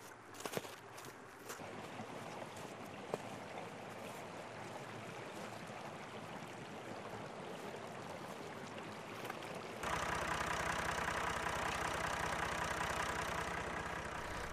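Faint outdoor background with a few light knocks. About ten seconds in, the sound cuts to a farm tractor's engine running steadily with an even, rapid pulse.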